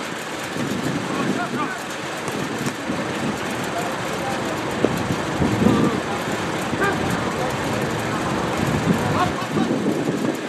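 Steady outdoor rushing noise with faint, distant voices calling, and a single sharp knock about five seconds in.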